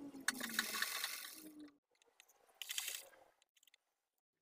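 Fabric of a sewn garment rustling and crackling as it is handled, with rapid clicks, in two bursts: a longer one near the start and a short one about halfway through.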